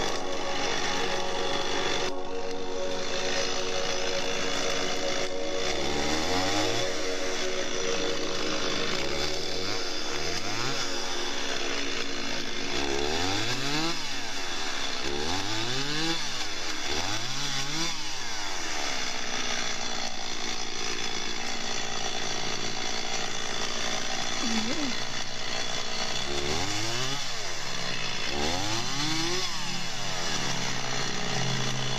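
Stihl chainsaw idling, then revved up and back down about nine times, each rise and fall of pitch lasting a second or so, while bucking a downed log.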